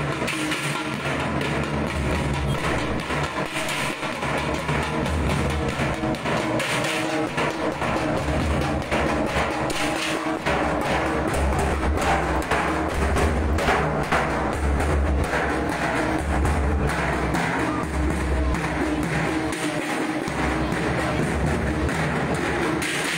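A street drum group beating large cylindrical drums in a steady, continuous rhythm, with heavy low thuds under dense, fast strokes.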